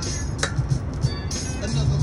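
Hip-hop background music: a rap track's beat with a heavy bass line.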